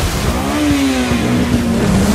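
A Mini Cooper engine at high revs as the car drives through water. The engine note climbs about half a second in, then sinks slowly, over a steady hiss of splashing spray.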